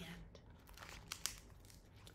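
Hardcover picture book being closed and handled, its covers and pages crinkling faintly, with a few small ticks about a second in.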